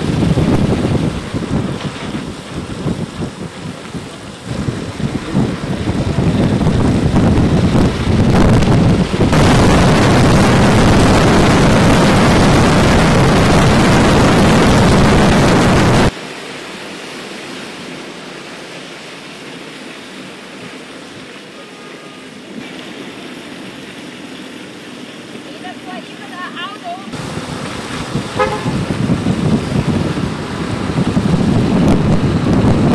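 Road and traffic noise on wet streets, heard from a moving car: a loud rushing noise that cuts off suddenly about halfway through, giving way to quieter street sound with a few faint short tones near the end.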